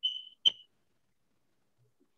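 Two short high-pitched beeps, the second about half a second after the first and beginning with a sharp click.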